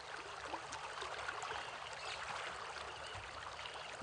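Swollen, muddy river flowing: a steady, even rush of moving water.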